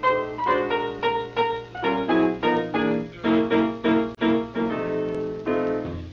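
Piano music: a run of struck notes and chords at about three a second.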